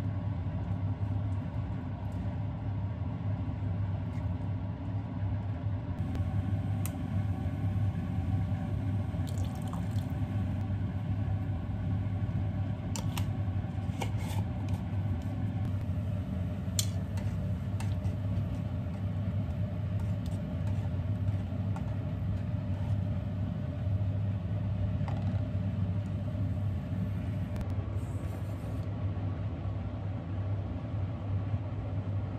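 A steady low rumble throughout, with a scatter of light clicks and taps of kitchen utensils.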